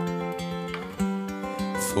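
Acoustic guitar accompaniment to a slow ballad: a chord rings on, then a fresh strum comes in about a second in; the voice comes back on a word just at the end.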